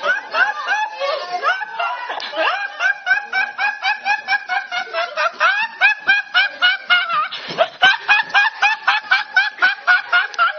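A young man's fit of high-pitched laughter: quick, squealing laughs repeated several times a second without a break.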